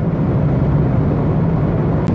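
Car in motion heard from inside the cabin: a steady low drone of engine and road noise.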